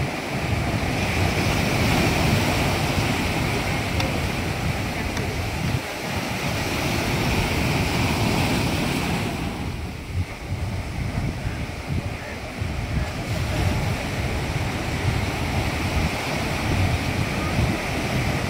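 Sea surf breaking and washing up the shore in a continuous rush, with wind buffeting the microphone in a low rumble. The surf's hiss eases for a few seconds about halfway through.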